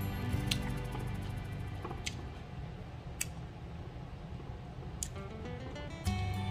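Soft background music, with four brief sharp clicks spread through it from a man chewing roast duck.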